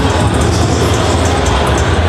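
Background music with a heavy, steady bass.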